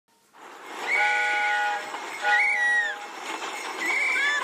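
A train whistle blowing twice, each blast about a second long and sounding several notes at once, the second bending in pitch as it ends.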